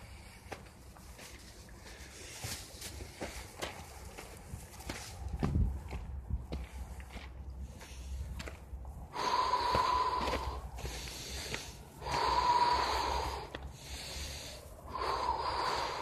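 A man breathing hard, with three long, loud, rasping breaths about three seconds apart in the second half, the first preceded by scattered faint clicks and scuffs.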